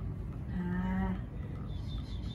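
A woman's short, level hum, a closed-mouth 'mmm' lasting about half a second, starting about half a second in.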